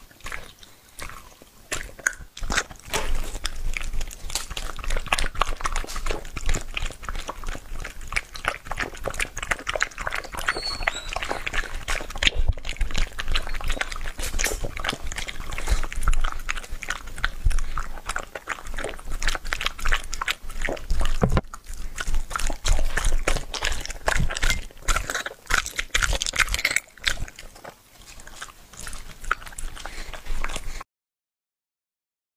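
A dog chewing and biting raw meat, a dense, irregular run of wet smacks and clicks close to the microphone with short pauses. Near the end it licks the empty bowl.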